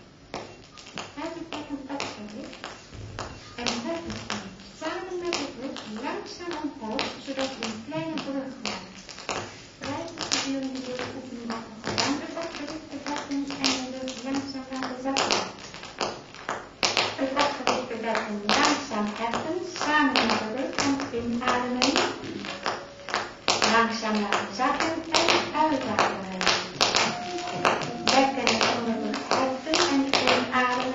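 Live electronic music: voice-like pitched sounds that glide up and down, mixed with many sharp clicks and taps. It grows louder and busier about halfway through.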